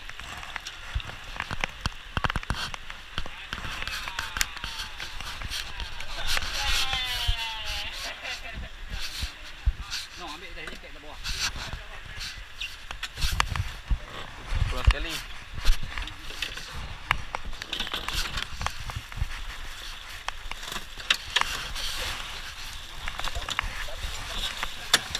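Knocks and clatter of gear being handled on an aluminium boat, with indistinct voices in the background.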